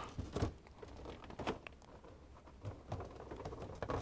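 Faint, scattered clicks and light knocks from the plastic housing of an LCD monitor being handled and turned over on a workbench.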